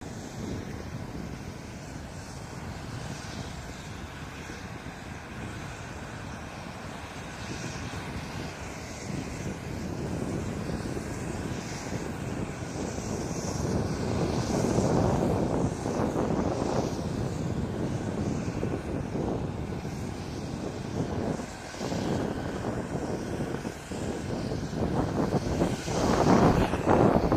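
Jet aircraft engine noise on an airfield: a steady rush that grows louder over the first half and then wavers.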